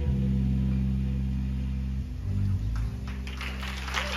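A live band's closing chord ringing out: low electric bass and guitar notes held and sustaining, shifting once or twice. The audience starts clapping near the end.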